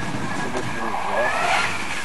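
School bus engine running hard under load as the bus climbs a steep dirt hill, with its rear wheels churning up loose dirt; a steady rushing noise.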